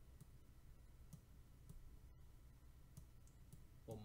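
Faint, scattered clicks of a stylus tapping and writing on a tablet, over a low steady hum of room tone.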